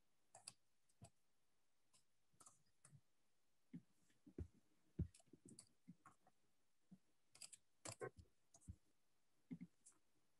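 Scattered, irregular clicks and soft knocks of someone working at a computer, over near-silent room tone; the loudest knock comes about five seconds in.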